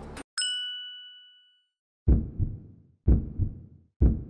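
An editing sound effect: a single bright ding that rings out and fades over about a second. It is followed by three low, heavy hits about a second apart.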